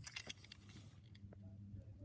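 Faint handling of a small plastic toy train engine: a few light clicks and taps in the first half second, over a low steady hum.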